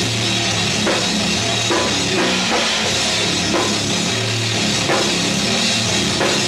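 A live heavy metal band playing loud and without a break, drum kit driving under guitars and bass.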